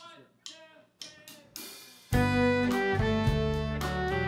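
A short count-in of four evenly spaced beats, then about two seconds in a country band comes in all together: guitars, pedal steel, fiddle and drums playing loudly.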